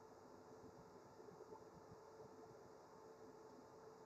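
Near silence: faint room tone with a faint steady hum.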